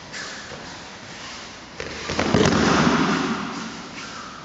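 An aikidoka being thrown and landing in a breakfall on foam mats: a few quick knocks, then a loud thud and slap about two seconds in, fading out over a second or so.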